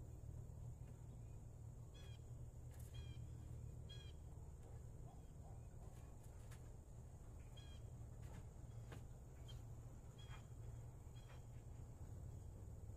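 Chickens calling faintly, short calls every second or two, over a low steady hum, with a few faint knocks from a shovel digging in rocky soil.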